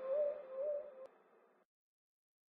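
The last held synthesizer note of an electronic track: one low tone pulsing about twice a second and fading. It is cut off with a click about a second in, and digital silence follows.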